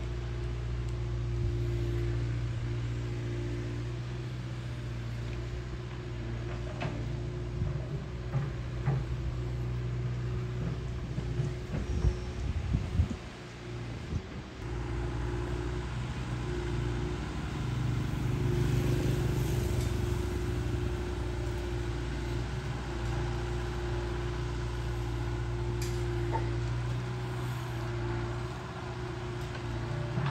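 Diesel engine of a long-reach excavator on a floating pontoon running steadily, with a few knocks and a brief dip in level about twelve to fourteen seconds in.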